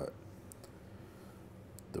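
Pause in narration: faint background hiss with a few faint, short clicks, a pair about half a second in and another pair near the end.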